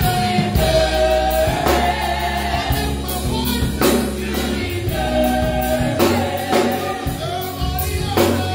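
Gospel praise team singing together over a band, with long held notes and a steady low bass line, and drum hits keeping the beat.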